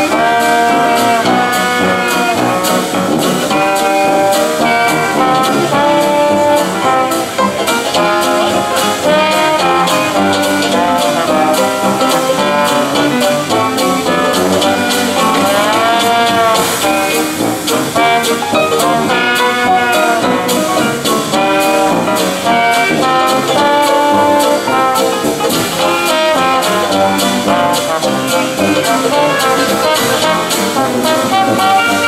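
Traditional Dixieland jazz band playing live: trombone, trumpet and clarinet weaving melody lines together over tuba and a drum kit keeping a steady beat.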